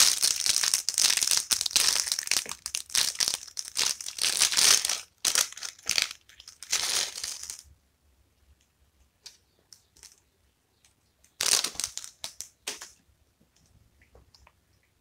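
Thin plastic parts bag crinkling as it is pulled open and handled, loud and continuous for the first seven and a half seconds. After a quiet stretch with a few faint clicks, another short burst of crinkling comes about eleven and a half seconds in.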